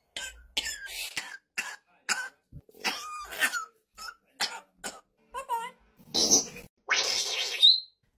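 African grey parrot mimicking a man's chronic COPD cough: a string of short coughs and wheezes, then two longer, louder coughs near the end, the last ending in a short rising squeak.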